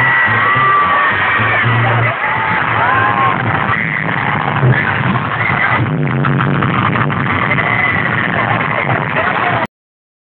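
Live banda music, with a low bass line and a wavering voice or horn melody over a dense band sound, recorded on a phone from within the crowd; it cuts off abruptly near the end.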